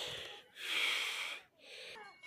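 A person's breathy exhalation close to the microphone: a short puff at the start, then a longer one of about a second.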